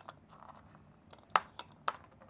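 Small candy-coated chocolate eggs clicking against a 3D-printed plastic bunny candy dispenser as they are fed into it, with faint handling clicks and two sharper clicks near the end.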